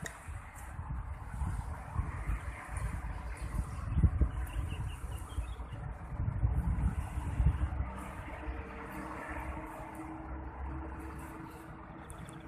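Outdoor background noise: an uneven low rumble of distant road traffic, with a short run of faint bird chirps about four seconds in.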